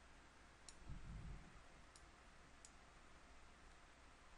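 Three faint computer mouse clicks, spread over a couple of seconds, against quiet room tone, with a soft low thump about a second in.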